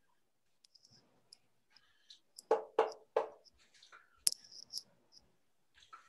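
Writing on a board: faint taps and small squeaks, then three short scratchy strokes about halfway through and a single sharp click a second later.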